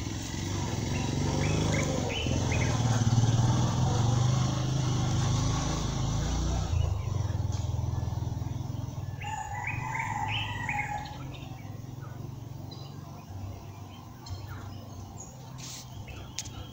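Background ambience: a low rumble, strongest for the first six or seven seconds and then fading away, with birds chirping a few times, about two seconds in and again around ten seconds in.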